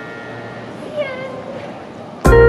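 A woman's brief high-pitched squeal about a second in, its pitch rising then falling.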